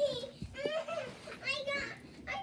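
A young child's high-pitched voice making play sounds without clear words, with a soft thump a little before halfway.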